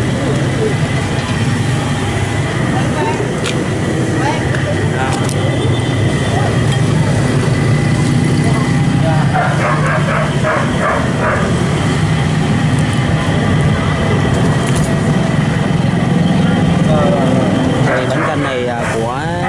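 Steady roadside street noise: a constant low rumble of passing traffic, with indistinct voices chattering in the background, clearest about ten seconds in.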